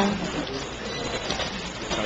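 Faint, indistinct background voices over steady room noise, with no clear single event.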